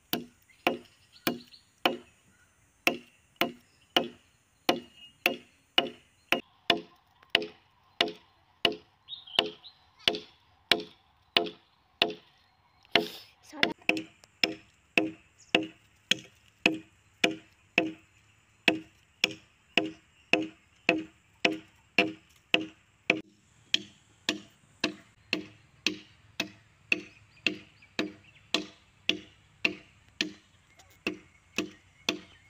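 Machete blade hacking into a wooden log in a steady rhythm, about two chops a second, each a sharp knock into the wood.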